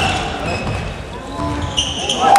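Basketball bouncing on a hardwood gym floor during live play, a run of low thuds, with players' voices in the hall.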